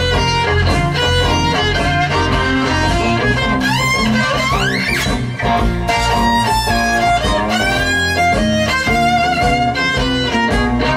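Instrumental blues on a bowed spalla (shoulder-held violoncello da spalla) over electric guitar, with a couple of rising slides on the bowed instrument in the middle.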